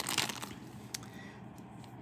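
Small clear plastic bag crinkling as a metal brooch is slid out of it, loudest in the first half second, then fading to faint handling noise with a single tick about a second in.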